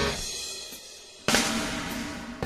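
Punk rock band recording with a stop in the song. A hit at the start rings out and fades for about a second, then drums and the band come back in suddenly about 1.3 seconds in.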